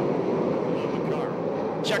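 Sprint car engines running as the field races around the dirt oval, a steady drone with no single engine standing out. A man's voice starts right at the end.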